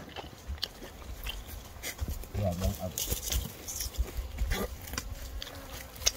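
Rustling and crackling of leafy branches and footsteps as people and dogs move through dense brush, with a brief voice a little over two seconds in.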